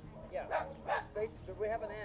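A dog barking, a string of short barks spread through the moment.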